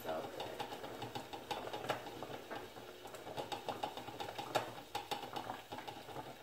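Melted candle wax being poured from a metal pouring pitcher into small glass candle jars, with irregular light clicks and taps throughout.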